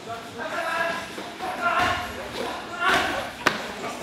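Kickboxing sparring with gloves: men's voices without clear words, and one sharp slap of a strike landing about three and a half seconds in.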